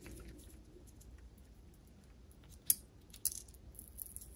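Faint crackle and small clicks of adhesive tape being peeled back from the core of a new outboard ignition coil, with two sharper clicks past halfway.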